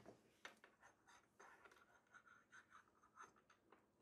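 Near silence with faint, scattered scratching and light clicks.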